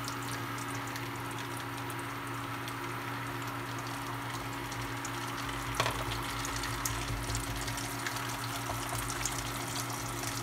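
Eggs and a thin wrapper sheet frying in a nonstick pan: a steady sizzle over a steady low hum. A single sharp click comes about six seconds in, after which small crackling pops become more frequent.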